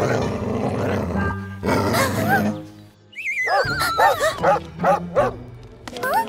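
A cartoon bull terrier growling, then barking about five times in quick succession, over background music with a falling, wavering tone.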